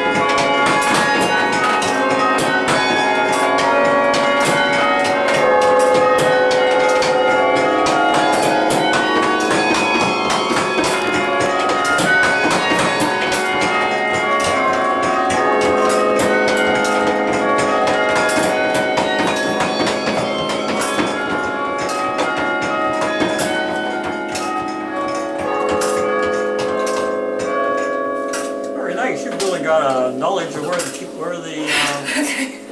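A 23-bell tower carillon played from its baton keyboard: a melody of bell strikes whose notes ring on and overlap, with the frequent knock of the wooden batons and action under the fists.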